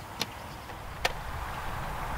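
Two short, sharp clicks less than a second apart over steady outdoor background hiss.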